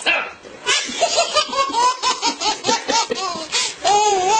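A person laughing hard in quick, repeated high-pitched bursts, about four a second, starting about a second in.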